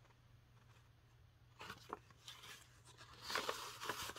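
An old paper letter being unfolded by hand: faint crinkling and rustling, a few soft rustles about halfway through, then louder paper crackling in the last second.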